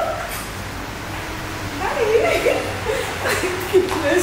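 Indistinct voices of a small group chatting and laughing, louder in the second half, with a few sharp clicks near the end.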